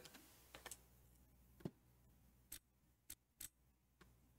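Faint clicks of a computer keyboard: the F1 key pressed about six times at uneven intervals, with long quiet gaps between.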